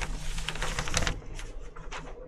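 A sheet of raw xuan paper rustling and crackling as it is pulled off a felt painting mat: a rapid run of crisp little clicks, busiest in the first second.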